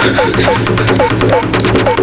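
Electronic action-film background score: fast, even percussion ticks, about eight a second, over a low steady drone, with short swooping synth notes repeating a few times a second.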